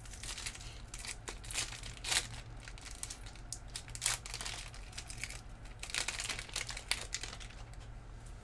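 Foil wrapper of a Panini Prizm red, white and blue trading-card pack crinkling and crackling irregularly as it is handled and torn open.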